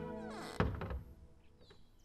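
Background music dies away, then a single wooden thunk about half a second in from a wooden double door with brass handles being worked, followed by near quiet.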